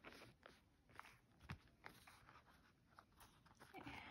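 Near silence with a few faint clicks and rustles of a small leather and canvas wallet being handled and opened.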